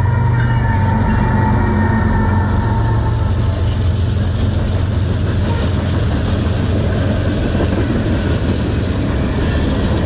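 Diesel freight locomotive passing close by, its low engine drone fading after the first few seconds as the train's freight cars roll past with a steady wheel rumble and clicking over the rails.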